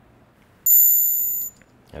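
A synth multisample note played back from a sample file, way too high: a thin, piercing tone that starts suddenly well under a second in, fades a little, and cuts off about a second later.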